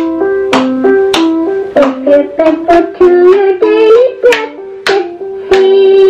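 Instrumental passage of a children's song: a pitched instrument playing a melody that steps up and down in short notes, with sharp, regular percussive hits.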